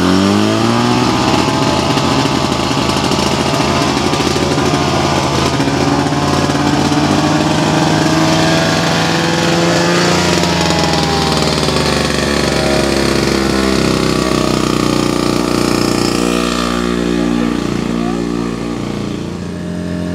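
Portable fire pump's engine revving up in the first second after starting, then running loud and steady at high revs as it drives water through the hoses.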